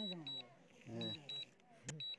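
Drone remote controller beeping: short high double beeps about once a second, the alert a DJI controller sounds while the drone flies itself home on Return-to-Home. A man's voice talks briefly over it.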